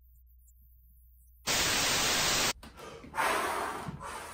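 Near silence, then a TV-static sound effect: a loud burst of white-noise hiss about a second and a half in that lasts about a second and cuts off abruptly. A softer rushing noise follows, swelling and fading near the end.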